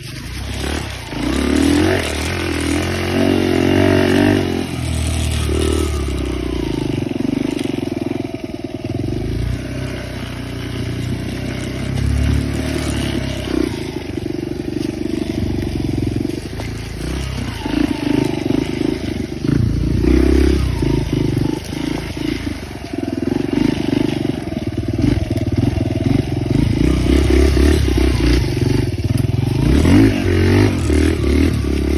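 Motorcycle engine running on the move, its note rising and falling with the throttle as it rides along a dirt trail.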